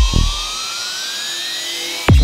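Psytrance track at a breakdown. The kick drum and bass stop about half a second in, leaving a synth tone rising steadily in pitch over a bed of high hiss.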